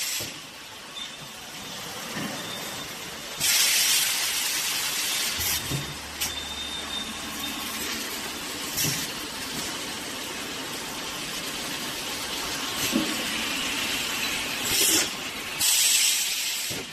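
Conveyor-belt vacuum packaging machine running with a steady mechanical noise, broken by loud bursts of hissing air: a long one about three and a half seconds in, a short one near nine seconds, and two close together near the end, as air is let back into the vacuum chamber.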